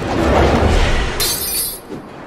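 Film fight sound effects: a heavy rushing impact with a deep low rumble, and a bright, sharp crash about a second in, over the score.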